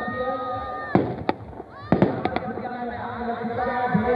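Firecrackers packed into a burning Dussehra effigy going off: a string of sharp bangs, about six of them between one and two and a half seconds in, over crowd noise.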